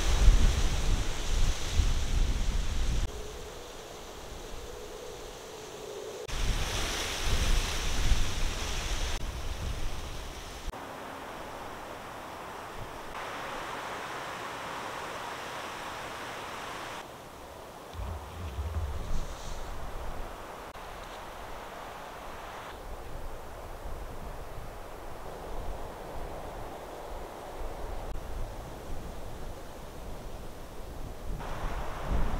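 Wind blowing, with gusts buffeting the microphone. The sound changes abruptly every few seconds, and the heaviest gusts come at the start and again around six to nine seconds in.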